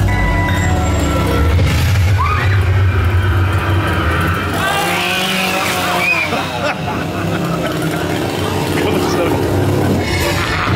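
Chainsaw engine running steadily, with music and raised voices over it.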